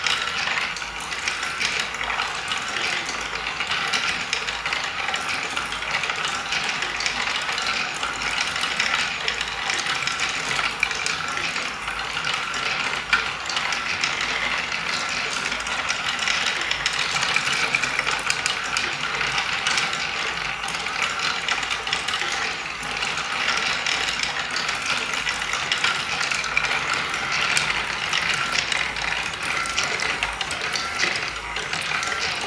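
Wooden marble machine with a stair lift mechanism running: a dense, steady clatter of clicking wooden parts and balls rolling along the wooden tracks.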